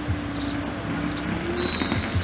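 Construction machinery engine running steadily in the distance, its hum rising slightly near the end, with scattered knocks and clicks.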